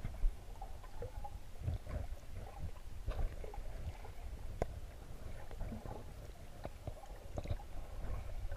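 Underwater sound picked up through a camera's waterproof housing: a steady low rumble of moving water with scattered small clicks and knocks.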